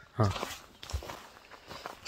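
Footsteps of people walking down a forest trail: a few soft, irregular steps, one heavier thud about a second in. A short breathy "huh" from a man comes just after the start.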